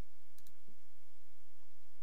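A couple of faint computer mouse clicks about half a second in, over a steady recording hiss.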